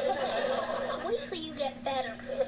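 Sitcom studio audience laughing after a punchline, heard through a television speaker.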